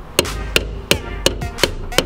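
Sharp, evenly spaced knocks, about three a second, as a steel pry bar levers the plastic fuel pump lock ring round on top of the fuel tank.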